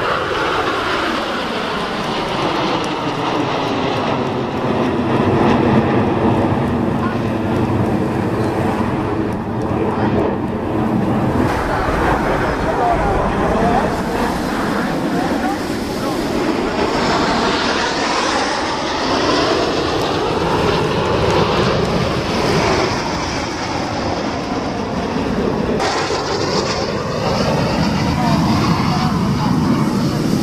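Formation of Aermacchi MB-339 jet trainers flying past: continuous turbojet engine noise whose pitch sweeps down early on as the jets pass, then rises and falls again in later passes.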